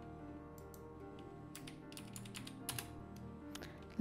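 A handful of faint computer keyboard keystrokes, scattered and irregular, most of them around the middle, over quiet background music of sustained tones.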